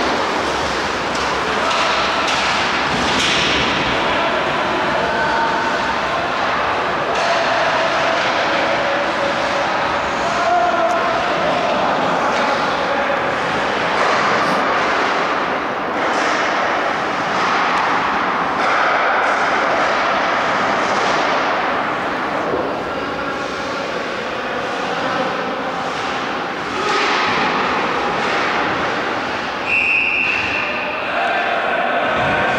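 Ice hockey play on an indoor rink: skates scraping the ice and occasional knocks of sticks and puck over a steady hall noise, with faint shouts from players now and then.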